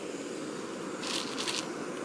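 Steady low outdoor background noise, with two short rustles a little over a second in.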